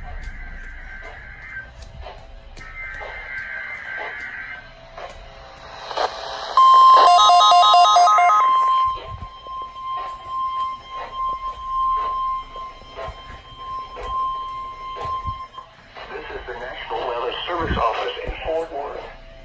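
Weather radio receiver sounding a NOAA Weather Radio Required Weekly Test. A thin broadcast voice comes first. About six seconds in there is a loud two-second burst of rapidly pulsing alert tones, and a steady high tone starting with it holds for about nine seconds before cutting off.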